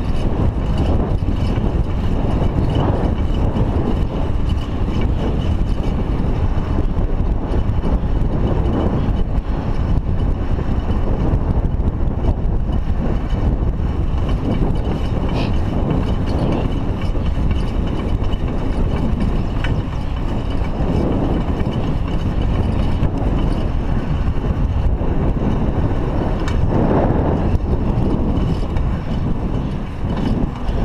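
Steady rumble of wind on a GoPro's microphone and bicycle tyres rolling on asphalt while riding at speed, slightly louder about 27 seconds in.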